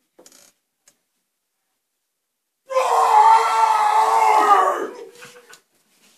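A man's loud vocal imitation of a lion's roar: one long held cry that starts a little before the halfway mark and trails off after about two seconds.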